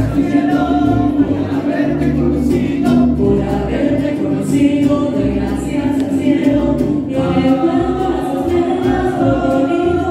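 Mariachi band playing and singing a song, several voices together over the band's steady bass line.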